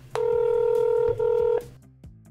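Telephone ringback tone heard down the line: one steady tone sounding for about a second and a half, with a brief break a little past a second in, while the outgoing call rings before it is answered.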